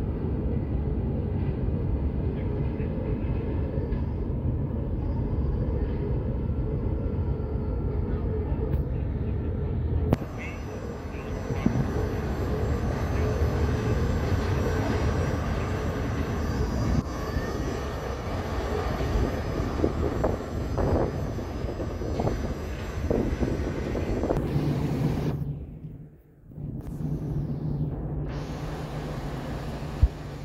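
Steady low rumble of city traffic. There is a click about ten seconds in; near the end the rumble dips sharply for a moment and a steady low hum takes over.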